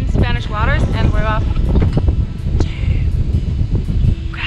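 Wind buffeting the microphone in a heavy, uneven low rumble, under a voice speaking briefly at the start.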